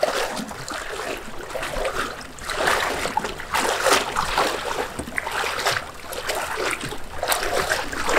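Floodwater splashing and churning in uneven surges as a person wades through it, pushing a small plastic boat whose hull slides through the water.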